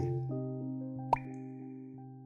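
Background music with sustained notes slowly fading out, and a single short pop about a second in.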